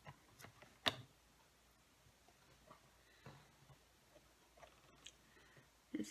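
Faint, scattered clicks and taps of a paper trimmer and card stock being handled, with the sharpest click about a second in.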